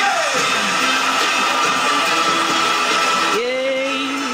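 Live pop music playing from a television, a halftime-show performance; a voice holds a long note near the end.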